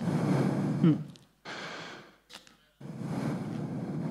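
A person breathing heavily into a close microphone: three long, noisy breaths, each about a second, with short pauses between, the breathing of a dancer still getting his breath back after an improvised dance.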